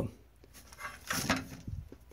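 Handling noise: a few soft, irregular knocks and rustles as the handheld thermal camera is moved.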